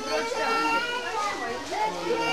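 Young children's voices talking and calling out over one another, several at once.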